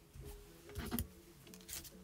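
Faint handling sounds of a thin strip of white card scrap being picked up and laid against a card on a glass craft mat, with a couple of light taps about a second in.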